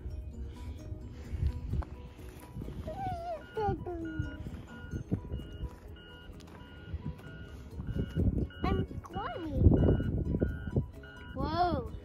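Young children's short vocal squeals and sounds, with low rumbling noise on the microphone. Behind them is a faint repeating electronic beep pattern at two pitches, about twice a second.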